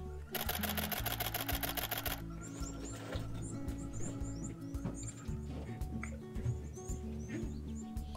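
A camera shutter firing a rapid burst of clicks for about two seconds while tracking birds in flight, over background music with a steady beat.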